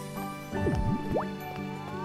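Soft background music with a cartoon water-drop sound effect: a quick falling-then-rising 'bloop' a little over half a second in, as something drops into the water. Rising tones enter near the end.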